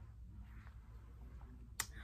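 Faint room tone with a brief soft rustle, then a single sharp click near the end.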